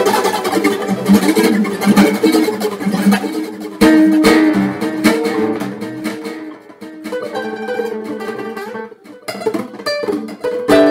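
Acoustic guitar played solo: dense ringing chords, then a sharp strum about four seconds in, after which the playing thins out with brief quiet dips near the end.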